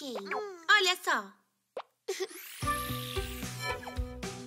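Cartoon soundtrack: a high, child-like voice for the first second or so, then a short pop sound effect. A whoosh rising and falling follows, and bright children's music starts about two and a half seconds in.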